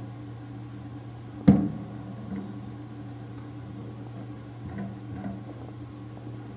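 A steady low hum, with one sharp knock about one and a half seconds in and two fainter, softer sounds near the end.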